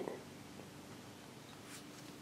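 Faint room tone: a steady low hiss with no distinct sound.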